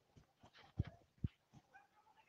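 A mostly quiet pause with two faint, short knocks, the second about half a second after the first.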